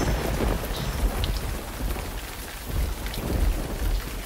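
Thunder-and-rain sound effect: a continuous rumble of thunder under a dense hiss of rain, swelling a little near the end.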